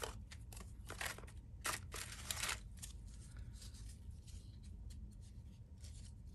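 Paper and card pieces rustling and shuffling as hands sort through a plastic storage box, with light scrapes and taps, busiest in the first couple of seconds.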